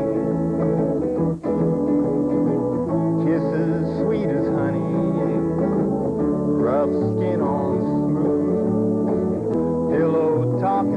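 A man singing a country song to guitar accompaniment, with a brief break in the sound about a second and a half in.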